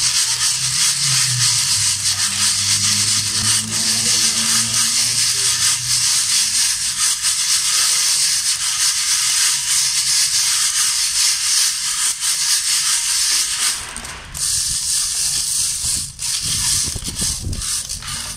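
Green robusta coffee beans rattling and sliding over a perforated metal sieve as the tray is shaken by hand, a dense, steady rustle of many beans at once. This is size-sorting: small and broken beans drop through the holes. The sound eases off about 14 seconds in, then returns more unevenly.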